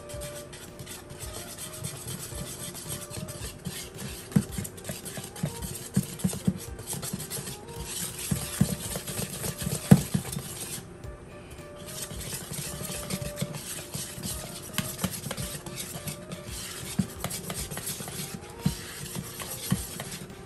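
Batter being stirred briskly in a bowl, the utensil scraping and clicking against the sides in a quick irregular patter, with one louder knock about ten seconds in.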